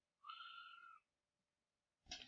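Near silence, with one faint, high-pitched sound lasting under a second, starting about a quarter of a second in.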